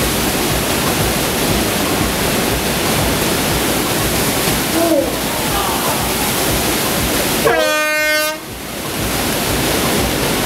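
Steady rushing of the FlowRider's high-speed sheet of water pouring over the wave surface. About seven and a half seconds in, a horn sounds once at one steady pitch for just under a second.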